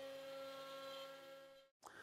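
Faint, steady whir of an X-Carve Pro CNC router's spindle driving a quarter-inch upcut bit through ash, cutting mortises. It cuts off abruptly shortly before the end.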